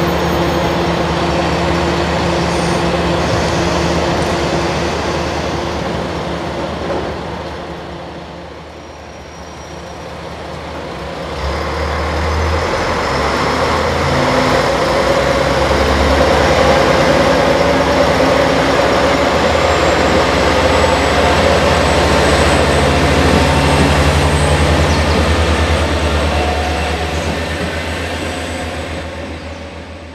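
JR Kyushu KiHa diesel railcar pulling away from the station, its diesel engine running and working harder as the train accelerates. The sound dips about eight seconds in, grows louder from about twelve seconds, then fades near the end as the train leaves.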